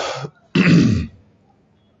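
A man clearing his throat twice: two short bursts about half a second apart.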